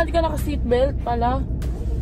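A young woman talking over the steady low rumble of a car's interior.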